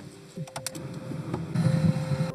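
Door handle of a BMW sedan pulled and the latch clicking open, a few sharp clicks about half a second in. A louder low sound builds near the end.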